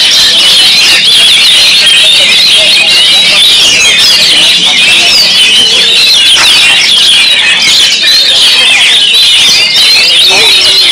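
Many caged songbirds singing at once in a dense, unbroken chorus of high chirps and whistles, among them the song of an oriental magpie-robin.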